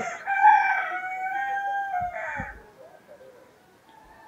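A rooster crowing once in the background, one long call lasting about two and a half seconds.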